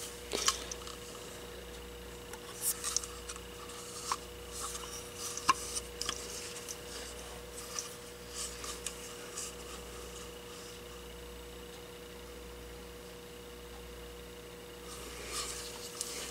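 Hands turning and handling a plastic-housed induction light bulb: soft rubbing and light plastic clicks, scattered through the first nine seconds or so, then a quiet stretch with a faint steady hum.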